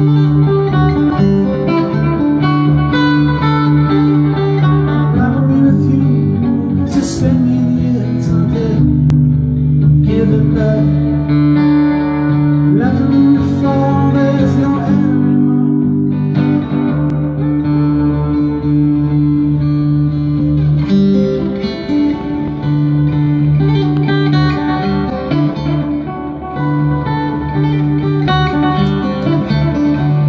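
Live solo acoustic guitar, fingerpicked over a steady low ringing bass note, played through the venue's sound system.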